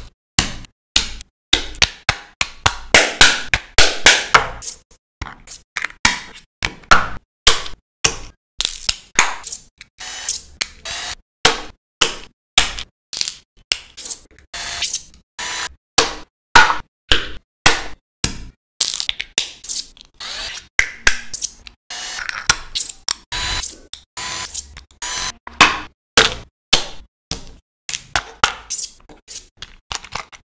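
Small hard-plastic toy parts being handled, clacking against each other and tapped down onto a table: a rapid, irregular string of short sharp clicks and knocks.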